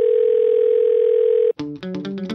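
A steady single-pitched electronic tone with a faint hiss cuts off suddenly about a second and a half in. Plucked guitar music starts right after it.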